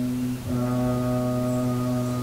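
A Buddhist monk chanting in Pali, holding a long, steady low note on one pitch, with a brief break about half a second in before the note resumes.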